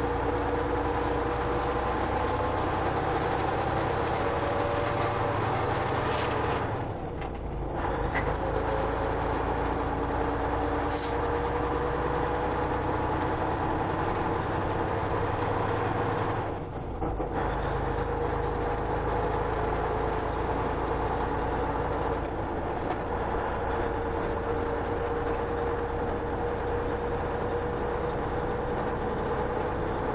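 Steady engine and tyre noise heard inside the cab of a large vehicle driving on a snow-packed road. Twice the low engine sound briefly drops away and then comes back.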